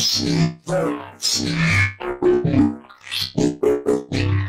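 Metallic synth bass from a voice sample resynthesized in Harmor and run through Corpus's tube resonator. It plays a run of about six short notes with heavy distortion, which is a little bit too much distortion.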